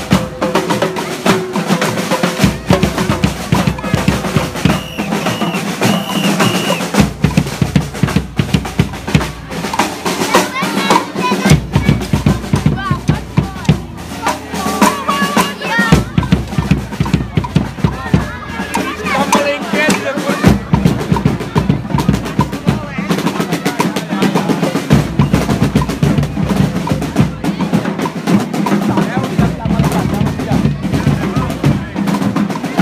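A drum group playing a fast, continuous rhythm of snare-drum rolls and bass-drum beats, with crowd voices underneath.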